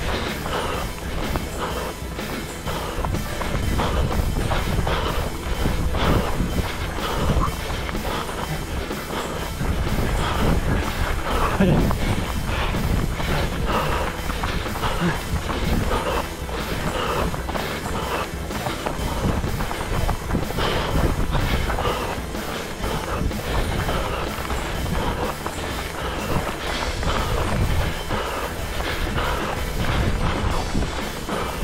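Running footsteps on forest ground, about three strides a second, picked up close by a head-mounted camera with a rumble of movement and wind.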